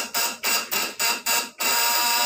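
Loud electrical buzz of a homemade high-voltage converter's vibrating contact-breaker points, stuttering on and off about five times before settling into a steady buzz near the end. It is the 1000 W unit, which is losing power.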